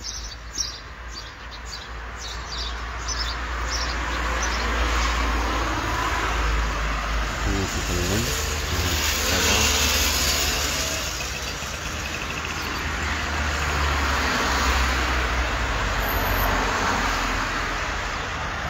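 Cars passing along a city street, their engine and tyre noise swelling and fading twice. Birds chirp during the first few seconds.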